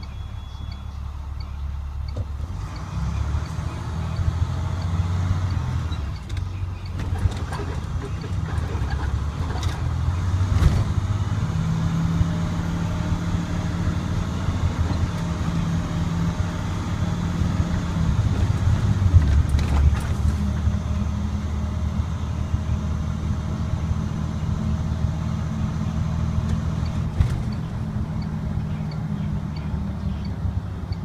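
Navistar DT466E diesel engine of an IC CE300 school bus heard from the driver's seat, pulling away and accelerating: its drone grows louder over the first few seconds, climbs in pitch, drops back as it shifts and climbs again. A few short knocks and rattles from the bus body break in now and then.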